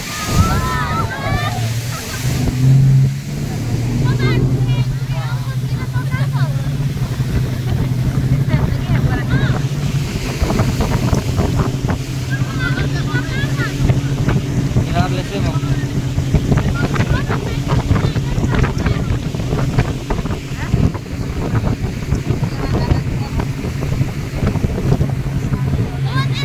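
Passenger speedboat under way: its engine holds a steady low drone over rushing water and wind buffeting the microphone, with people's voices breaking in now and then.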